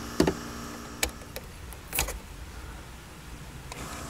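A few scattered clicks and taps of plastic trim being handled as the rearview mirror cover is worked loose by hand, the loudest click about two seconds in.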